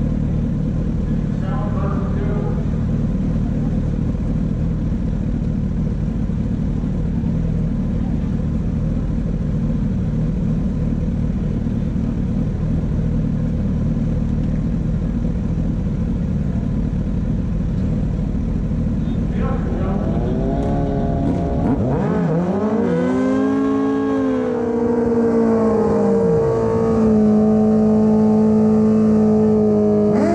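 Motorcycle engines idling steadily at a drag strip's starting area, then, about twenty seconds in, revs rising and falling before being held at a steady high pitch near the end, as a bike readies to launch.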